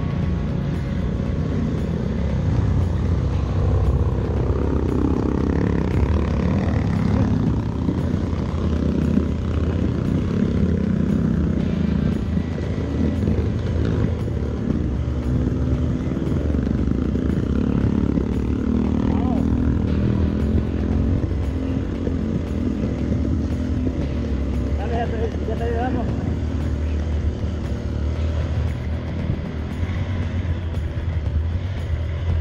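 Motorcycle engine running steadily as the bike is ridden, at an even level.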